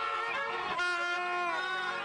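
Several plastic horns blown at once, sustained overlapping steady tones at different pitches that fade near the end.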